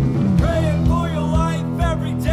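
Rock band playing a song: electric guitars, bass and drums under a sung vocal line that comes in about half a second in.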